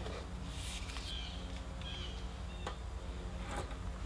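Quiet handling noise: a brief rustle about half a second in and a few soft clicks over a steady low hum, with two short high chirps about one and two seconds in.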